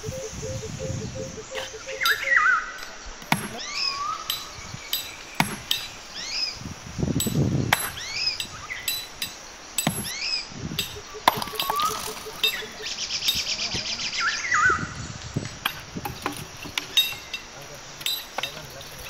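Hammer blows on rock: a series of sharp clinking strikes about a second or so apart, with a bird calling over and over in the background.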